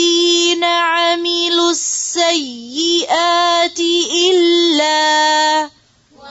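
A woman's voice reciting a Quranic verse in melodic tajweed chant, with long drawn-out held notes and a slow dip in pitch about two and a half seconds in. The voice breaks off shortly before the end.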